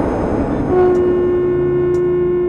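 The rumble of a blast dies away, and about two thirds of a second in a long, steady blown note begins on a conch shell (shankh).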